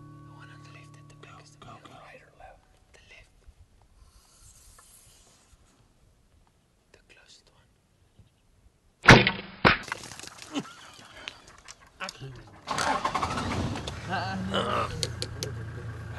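Compound bow shot at a double-banded sandgrouse: after a long near-silent stretch, one sharp, loud crack about nine seconds in, with a second, smaller crack half a second later. A few seconds after the shot comes a louder stretch of low voices and noise.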